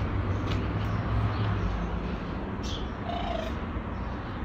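Steady low outdoor background rumble with a few faint, short high chirps and a brief faint squeak near the end.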